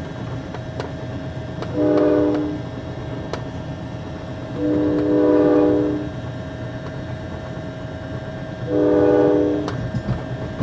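A moving passenger train rumbling steadily with scattered rail clicks, as its whistle blows three times, a chord of several notes each time, the middle blast the longest.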